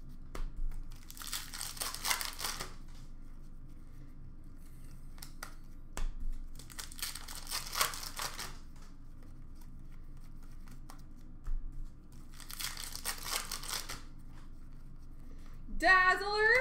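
Hockey card pack wrappers crinkling and tearing open three times, about five seconds apart, with faint taps of cards being handled in between.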